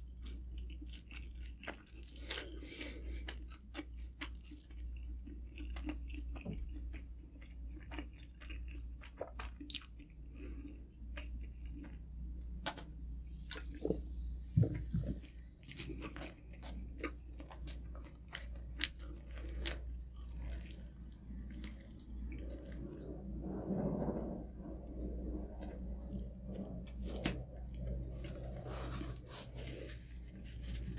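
Close-miked chewing of pepperoni pizza, with small crunches of the crust and wet mouth clicks scattered throughout.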